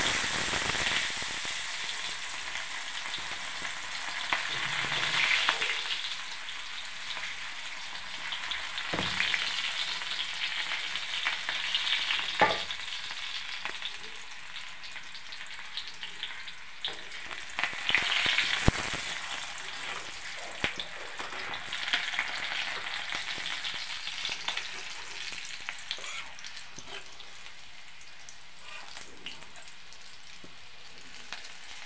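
Hot oil frying and sizzling in a steel kadai, loudest at the start and swelling again a few times as it is stirred with a metal spatula, with a few sharp knocks of the spatula against the pan.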